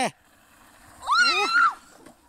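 A short, high-pitched yell from a young voice, about a second in, rising and then falling away in under a second.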